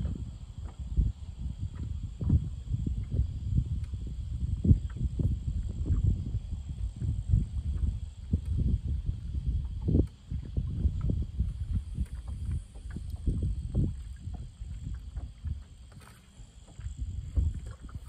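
Wind buffeting the microphone on an open fishing boat, a low uneven rumble, with small knocks of water against the hull.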